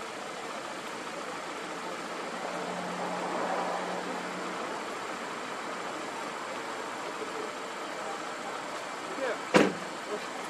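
Steady distant engine and outdoor background noise, with a faint low hum for a couple of seconds a few seconds in. A single sharp knock near the end is the loudest sound.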